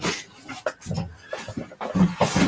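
Men chuckling and laughing in short breathy bursts, heard over a video-call connection.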